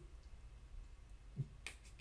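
Near silence: room tone, with a faint click about one and a half seconds in and a short breath near the end.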